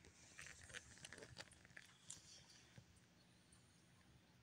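Faint mouth clicks and smacks from a small dog making empty chewing motions, a string of them over the first two seconds or so, then fading to near silence. The owner asks whether these episodes are seizures.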